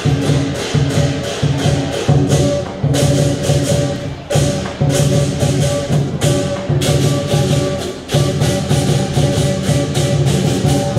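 Lion dance drum and cymbals beating a fast, loud rhythm of about four strokes a second, with a few brief breaks in the beat.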